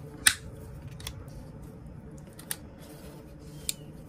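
Steel pliers clicking against the pins of an old pocket knife as they are worked to pull the pins out: four sharp metal clicks, the first about a quarter second in and the loudest.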